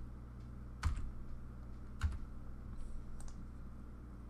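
A few clicks from a computer keyboard and mouse as text is selected and deleted: two sharper clicks about one and two seconds in and fainter ticks near the end, over a steady low electrical hum.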